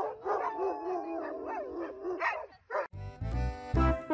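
A husky vocalizing in short, wavering, sliding howls for the first two and a half seconds. Loud music with a heavy beat starts about three seconds in.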